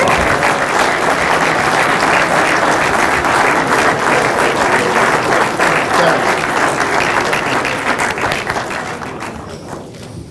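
Audience applauding, a dense steady clapping that dies away near the end.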